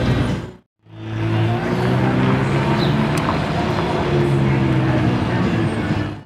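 McLaren 570's twin-turbo V8 running at low revs as the car moves off slowly: a steady exhaust note that swells and eases a little in pitch. The sound cuts out for a moment under a second in, then carries on.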